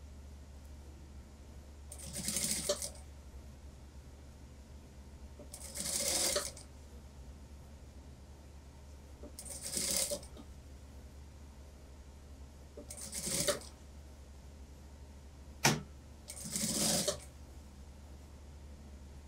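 Industrial lockstitch sewing machine stitching a curved seam in five short runs of about a second each, roughly every three to four seconds, each run speeding up before it stops. A steady low hum runs underneath, and a single sharp click comes about three-quarters of the way through.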